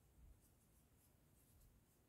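Near silence, with faint rubbing of yarn and a metal crochet hook as a double crochet stitch is worked into a magic ring; a slightly louder rustle comes about a quarter second in.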